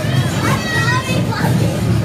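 Children's high voices calling and chattering on a carousel ride, over a steady low hum.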